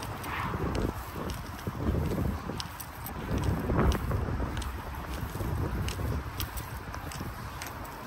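Wind buffeting the microphone in uneven gusts, with scattered light clicks throughout.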